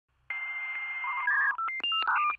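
Telephone dial tone for about a second, then a quick run of touch-tone keypad beeps at changing pitches, opening an electronic intro jingle.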